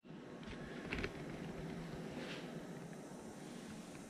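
Quiet room tone in a small garage with a few faint rustles from a handheld camera being moved, one about a second in and another a little after two seconds.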